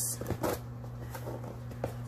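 A few light taps and rustles from hands holding and shifting a cardboard box, over a steady low hum.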